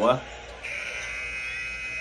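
Basketball arena horn, a steady buzzing tone starting about half a second in: the end-of-period buzzer as the game clock runs out.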